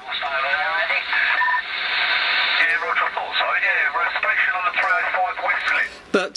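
CB radio receiving other operators' voices on upper sideband through its speaker, thin and band-limited, with receiver hiss under the voices for the first couple of seconds.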